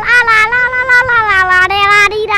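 A young boy's high voice holding a long, wavering sung note into a close microphone, its pitch sliding slowly downward.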